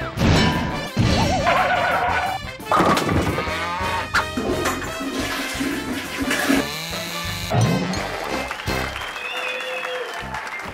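Theme music for a TV show's opening titles, broken by sudden loud hits about every second or two and stretches of rushing noise.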